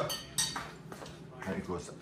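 A spoon clinking against a soup bowl while someone eats, with two sharp clinks in the first half second and softer taps after.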